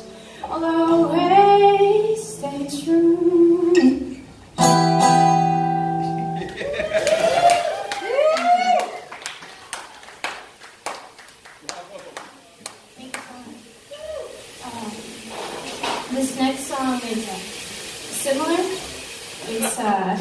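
Singing over a strummed acoustic guitar ends on a chord that rings out about five seconds in. A few more sung phrases follow, then a patter of hand claps with some voices.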